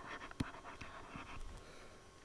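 Faint scratching of a stylus writing on a tablet, with one sharp click about half a second in.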